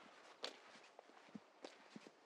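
Faint footsteps on pavement: a few soft, unevenly spaced steps over a quiet outdoor hiss, the clearest about half a second in.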